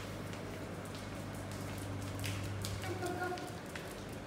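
Light footsteps in flip-flops on a tiled floor, with a few faint taps, over a steady low hum.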